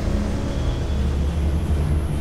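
A deep, steady low rumble from the sound design of an animated logo sting, heavy in the bass.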